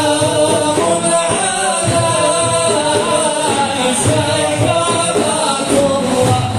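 A chorus of voices singing a Sufi devotional song over a large ensemble of daf frame drums beating together.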